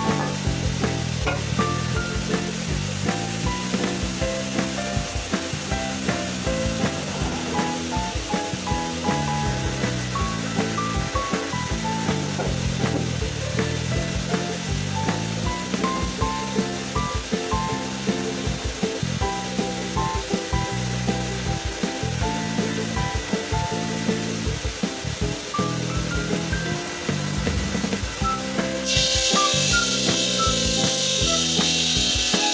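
Background music over the steady hiss of a water-cooled bridge saw cutting marble slabs. About a second before the end, the saw's hiss turns louder and brighter.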